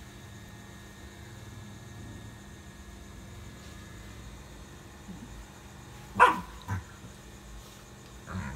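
A dog barking: one loud, sharp bark about six seconds in, followed quickly by a shorter, weaker one.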